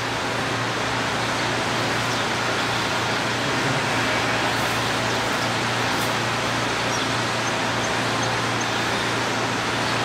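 Steady rushing background noise with a low hum underneath, unchanging throughout.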